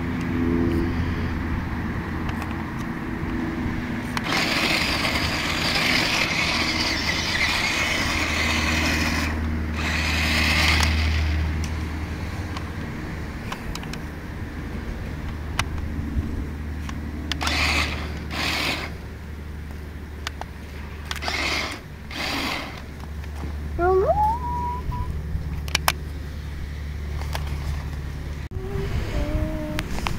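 Toy remote-control 4x4 monster truck driving over sand: its small electric drive motor whirs in spurts as it is throttled, with the tyres scrabbling on the sandy ground, over a steady low hum.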